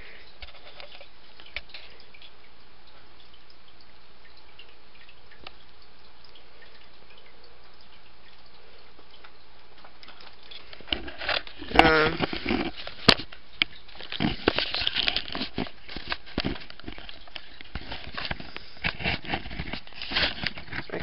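Steady background hiss for about eleven seconds. Then close handling noise: two sharp clicks and a run of quick taps, knocks and rustles as plant pots and objects are moved about on a plastic tray near the microphone.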